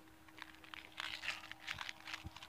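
Faint rustling and scattered soft clicks of a small zippered hip bag being handled and opened.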